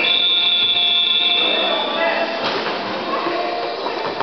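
Gymnasium game buzzer sounding one steady, shrill tone for about two seconds, followed by a basketball bounce on the hardwood floor.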